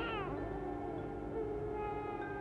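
A young child's wailing cry that slides down in pitch and fades out within the first half second, over sustained music tones.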